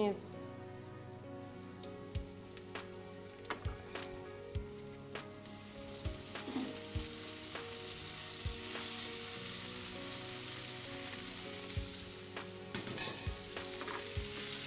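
Sliced onions frying in hot oil in a pan, with a wooden spatula clicking and scraping against the pan. About five seconds in the sizzle grows louder and steadier as chopped Chinese leafy greens are tipped into the oil.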